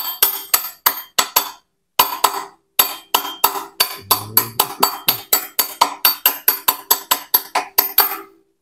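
Steel bar rapidly tapping a metal rod held against a gear shaft in an open motorcycle crankcase, about four to five ringing metallic strikes a second, with a brief pause near two seconds in.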